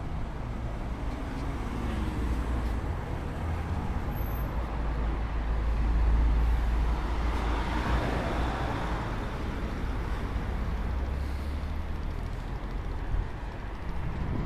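Street traffic: a car drives past close by, its noise swelling to a peak around the middle and fading away, over a steady low rumble.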